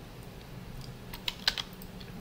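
A quick run of several keystrokes on a computer keyboard, starting about a second in, with two louder clicks among them.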